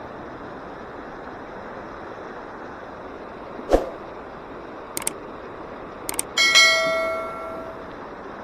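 A shallow stream runs over rocks with a steady rush. A few sharp clicks come about four, five and six seconds in. Then a bell chime of a subscribe-button sound effect rings and fades over about a second.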